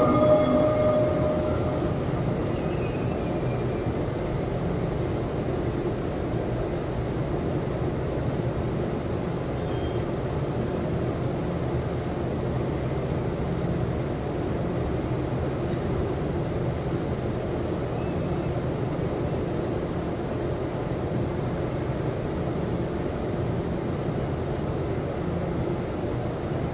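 Steady outdoor ambience of a large gathering: an even low rumble and murmur with no distinct events. A chanting voice trails off in the first second.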